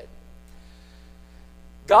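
Steady electrical mains hum, a low buzz with evenly spaced overtones, picked up through the sound system. A man's voice begins right at the end.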